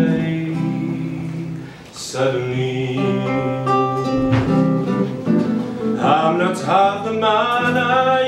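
A male voice singing with vibrato over a nylon-string classical guitar played by plucking, with a fresh chord about two seconds in.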